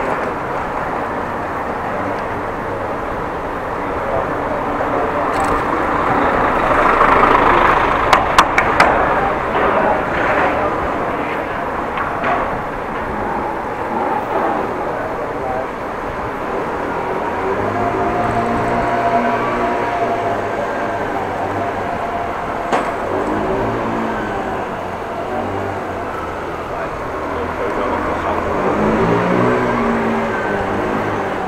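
Riding noise from a camera on a moving bicycle in a city street: a steady rush of air and tyres on pavement. A few sharp clicks and rattles come about eight seconds in, and a thin steady whine runs for several seconds past the middle.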